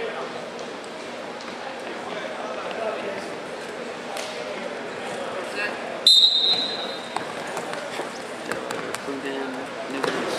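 A referee's whistle blows one sharp blast about six seconds in, lasting under a second, which starts the wrestling from the referee's position. Indistinct crowd chatter echoes through the gym throughout.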